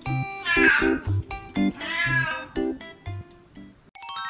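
A cat meows twice, each call about half a second long, over background music of plucked notes and a bass line.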